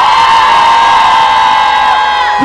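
A long, high-pitched cheer from the rally crowd, one note held steady for about two seconds and falling away near the end.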